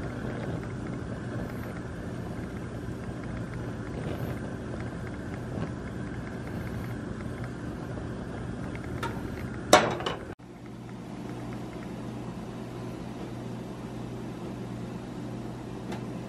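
Butter melting and gently sizzling in a frying pan on a gas stove, over a steady low hum. A single short clack comes just before the halfway point.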